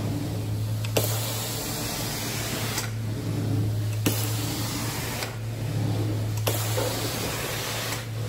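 Hot-water extraction carpet cleaner running, its vacuum wand pulled in strokes across carpet. A steady low hum runs under a loud rushing hiss that cuts in and out several times, with a click at each change.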